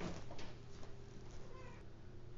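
A cat meowing faintly about a second and a half in, over a low, steady room hum.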